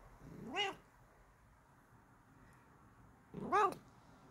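Bengal cat giving two short meows, one just after the start and one near the end, each curving up in pitch.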